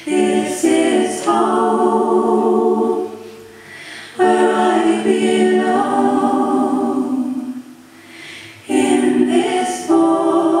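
A woman singing a cappella, unaccompanied, in three sustained phrases with short breaths about three and eight seconds in.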